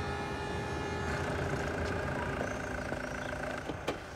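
Steady low rumble of city traffic, with several steady high tones held above it that change about a second in.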